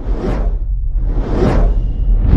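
Two cinematic whoosh sound effects about a second apart, over a deep low rumble of trailer sound design.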